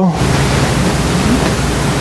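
Steady hiss across the whole range with a low hum underneath, with no change in level.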